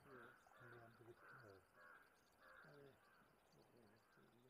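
Faint, low voices murmuring indistinctly, with faint bird calls in the background.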